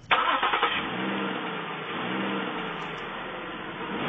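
Car engine and road noise heard from inside the cabin: a steady rush, with the engine note briefly rising and falling a couple of times.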